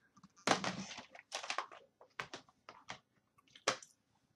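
Handling noise: a string of irregular clicks and rustles as objects are picked up and moved about close to the microphone.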